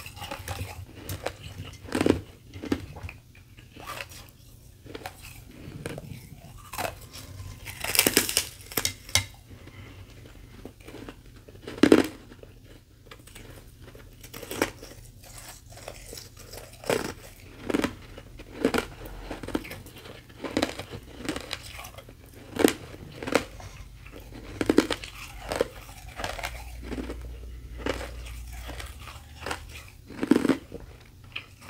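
Close-up crunching of a thin sheet of carbonated ice with powdery frost as it is bitten and chewed. Sharp crunches come loudest about 2, 8 and 12 seconds in, then repeat at a steady pace of roughly one a second through the later part.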